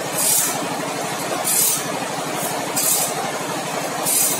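Automatic band saw blade sharpening machine running, its grinding wheel giving a short high hiss against the blade about once every 1.3 seconds, three times here, as it works tooth by tooth over the machine's steady mechanical running.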